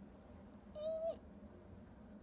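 A sleeping domestic cat giving one short, high mew about a second in, dropping in pitch at its end.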